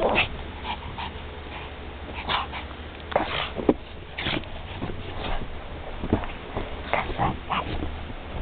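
Small dogs whimpering and yipping in short bursts, with brief crunching clicks between them.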